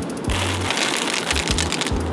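A dense rattle of many small clicks lasting about a second and a half: a handful of dry alphabet pasta thrown over an open book, pattering onto the pages and the pavement. Background music with a steady beat plays underneath.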